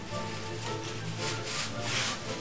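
Background music with steady held tones, and over it a few short rubbing swishes from about halfway through, the loudest near the end, as a necktie is pulled through its knot and slid along the shirt collar.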